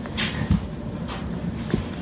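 A domino tile being handled and set onto a standing domino wall: a soft knock about a quarter of the way in and a small click near the end, over low handling rumble.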